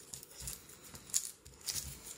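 Ink blending tool rubbing distress ink onto a thin paper strip on a glass chopping board: a few short rubbing strokes, each a soft brushing scrape.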